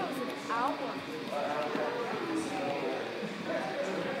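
Indistinct voices talking, with the murmur of other people in a large room.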